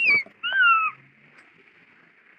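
A small child's two high-pitched squeals, each falling in pitch, the second about half a second long, followed by a faint steady hiss.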